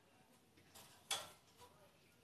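Faint handling of a wooden bird cage as its wire rods are fitted into drilled holes, with a single sharp click about a second in.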